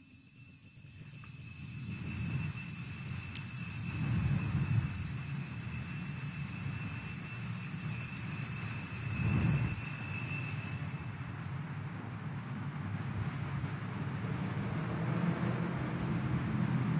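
Altar bells shaken in a continuous, shimmering ring at the elevation of the consecrated host, stopping abruptly about 11 seconds in.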